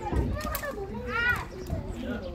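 Children's voices chattering and calling out, with one high-pitched call that rises and falls a little over a second in.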